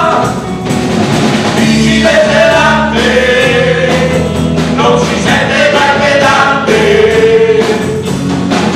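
Live band playing a song: men singing together at the microphones, with long held notes, over electric guitars, bass and drums.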